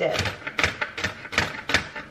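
Kitchen knife chopping a jalapeño on a cutting board: about five sharp chops, roughly three a second.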